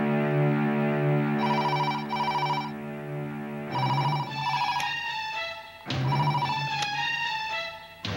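A telephone ringing in short double trills, three rings, over background music: a held drone in the first half, then a stepping melody from about four seconds in.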